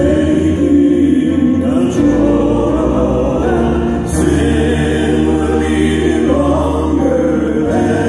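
Male southern gospel quartet singing in close harmony with piano accompaniment, amplified through a hall's sound system.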